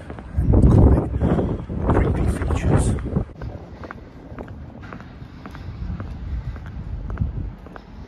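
Wind buffeting a phone's microphone for about the first three seconds, then a quieter street background with light footsteps of someone walking.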